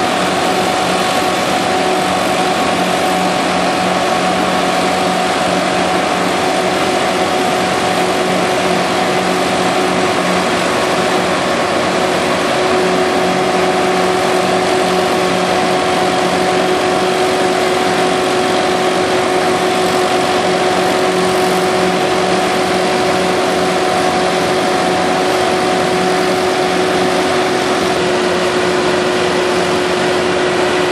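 Diesel power pack of a self-propelled modular transporter (SPMT) running at a constant speed, driving the transporter slowly under a 180-tonne tank. It makes a loud, steady drone with a constant whine over it, unchanged throughout.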